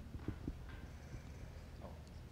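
Quiet hall room tone with a low hum and a few soft knocks in the first half-second.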